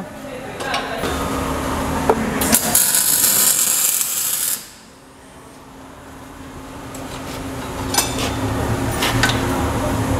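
MIG welder arc crackling while steel chassis tubing is welded, growing harsher partway through and cutting off suddenly about four and a half seconds in. A couple of sharp metal clicks come near the end.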